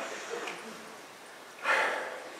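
A man's short, sharp breath close to the microphone, about one and a half seconds in.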